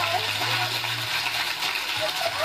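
Studio audience applauding, with a few cheering voices, heard from a television speaker.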